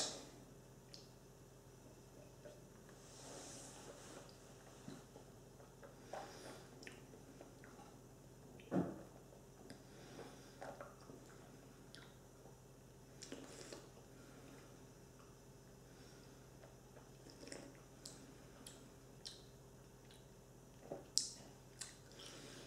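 Faint mouth sounds of someone tasting whisky: small wet smacks and clicks as the spirit is sipped and worked around the mouth, with one louder short sound about nine seconds in.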